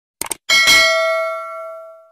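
Sound effects for a subscribe animation: a quick double mouse click, then a bell ding about half a second in that rings out and fades away over about a second and a half.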